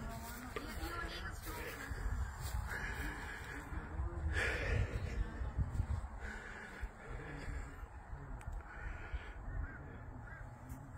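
Low wind rumble on the phone's microphone outdoors, with a few faint, drawn-out caw-like bird calls in the distance.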